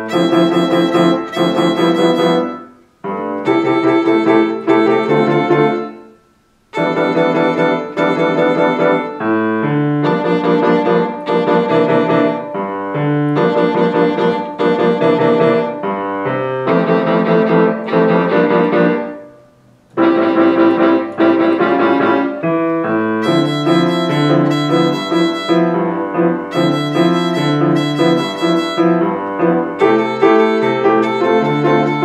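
Violin playing bowed notes on its open strings only, with grand piano accompaniment. The music drops away briefly between phrases about three, six and twenty seconds in.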